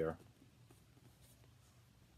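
End of a spoken word, then near silence in a small room with faint scratchy rustles of a cardboard LP jacket being handled.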